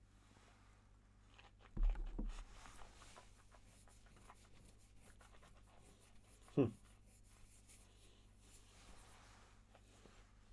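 A stemmed tasting glass is set down on the table with a dull knock just under two seconds in. Faint mouth clicks and lip smacks follow as the whisky is held and tasted.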